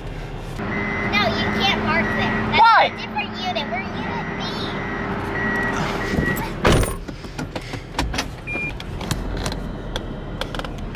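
Car cabin noise as the car is driven slowly: a steady hum with short high chirps over it in the first few seconds, and a sharp knock about seven seconds in, followed by scattered clicks.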